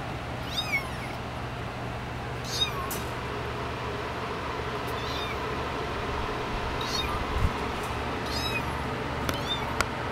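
Young kittens mewing: several short, high-pitched mews that fall in pitch, spaced every second or two. A brief low thump comes about seven and a half seconds in.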